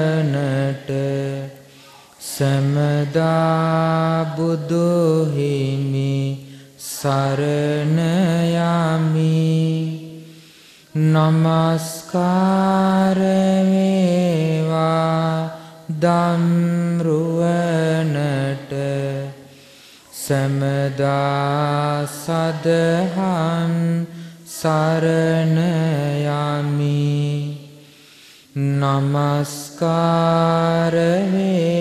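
A Buddhist monk chanting in a single male voice: long, melodic held phrases of a few seconds each, separated by brief pauses for breath.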